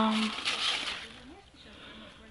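A woman's drawn-out word trails off, then a brief rustle of large zucchini leaves as a hand pushes through the plants, with a short hum about a second in.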